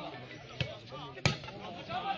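Two sharp smacks of a volleyball being hit, about two-thirds of a second apart, the second louder, over a murmur of crowd voices.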